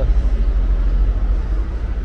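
Steady low rumble of wind and handling noise on the camera's microphone while walking, with no passing traffic.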